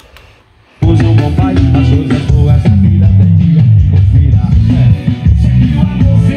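About a second of near quiet, then a song starts suddenly and loud, with heavy bass, played through a homemade speaker box with a 15-inch Heavy Sound woofer driven by a small 400 W RMS amplifier module.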